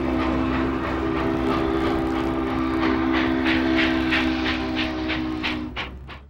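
Steam locomotive, a Baldwin-built 4-8-4 Northern, blowing one long, steady chime-whistle chord that stops near the end. Exhaust beats come in under it during the second half, about four a second.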